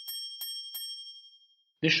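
A quick run of bright, bell-like dings, about three a second. Each is a sharp strike with a high ringing tone that fades out about a second and a half in. It is an animation sound effect marking each measuring stick as it is laid down.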